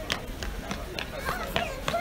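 Busy crowd of people outdoors: several voices talking indistinctly nearby, with scattered sharp clicks and taps and a steady low rumble underneath.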